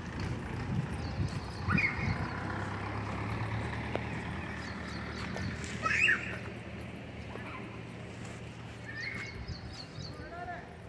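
Outdoor background with three short calls, the loudest about six seconds in, and a steady low hum through the middle.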